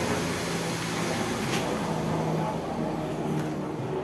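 Aeroplane passing overhead: a steady engine drone that starts to fade near the end.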